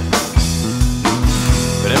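Rock song: the band plays a steady drum beat under sustained guitar and bass between sung lines. The singer comes back in near the end.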